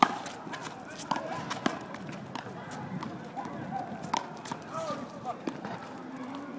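Handball rally: a small rubber handball slapped by hand and smacking off the concrete wall and pavement in a series of sharp knocks, the loudest right at the start, with sneaker footsteps on the court between them.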